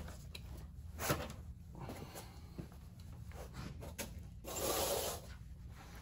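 Quiet handling noises: a few faint clicks of the steel socket and breaker bar being settled on the bolt extractor, and a longer soft rustle a little before the end.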